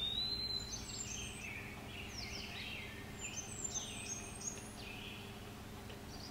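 Small birds chirping faintly: a run of short whistled notes that glide up and down, thinning out near the end, over a low steady hum.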